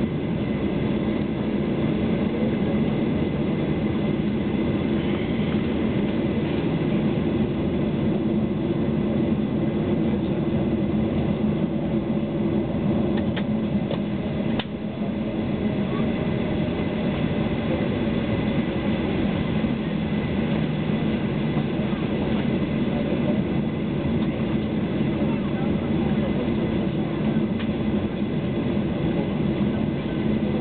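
Steady cabin rumble of a Boeing 737-800 taxiing on the ground, its CFM56 turbofan engines at low thrust, heard from inside the cabin. A single click with a brief dip in the noise about halfway through.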